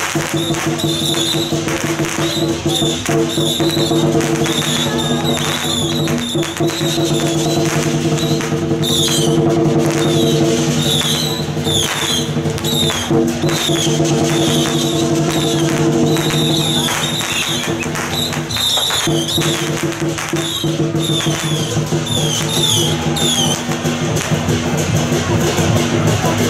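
Temple procession music: sustained steady tones over frequent drum and cymbal strikes, with a brief break in the held tones about three quarters of the way through.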